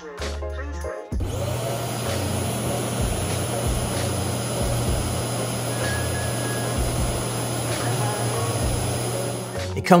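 Ecovacs Deebot Ozmo T8 auto-empty station's suction motor switches on about a second in. It runs as a loud, steady rush of air over a low hum and cuts off just before the end, sucking the docked robot's dustbin out into the station's bag.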